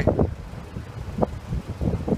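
Wind buffeting a phone's microphone in uneven low rumbling gusts, with one brief click a little past the middle.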